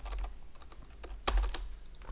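Computer keyboard typing: a few separate keystrokes, clicking near the start and in a quick run after the middle.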